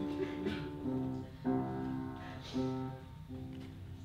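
Music played on a guitar-like plucked string instrument: several notes or chords, each struck sharply and left to ring.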